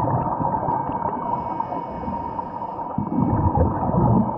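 Underwater sound picked up by a camera in its housing: muffled rumbling and bubbling from scuba regulator breathing, with a steady hum. The bubbling surges louder about three seconds in, as with an exhale.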